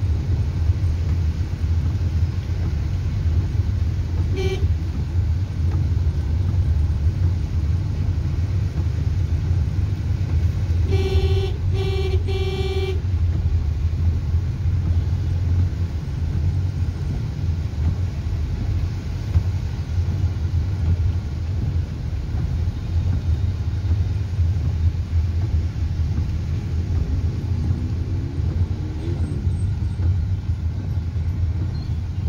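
Steady low rumble of road and engine noise inside a car cabin, with one short horn toot about four seconds in and three quick horn toots a few seconds later.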